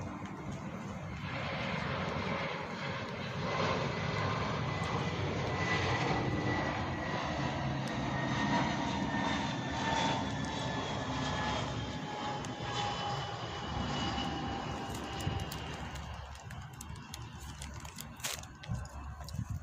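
A jet airliner flies past. Its engine noise swells over a couple of seconds, stays loud through the middle, then fades away, with a faint whine that slowly falls in pitch as it goes by.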